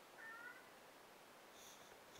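Near silence: room tone, with one faint, short high-pitched squeak near the start.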